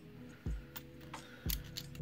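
Australian cupronickel 50-cent coins clinking against each other as they are handled and shuffled in the hand, a few sharp clicks, with soft background music under them.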